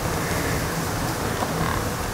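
Wind buffeting the microphone: an uneven low rumble over a steady hiss.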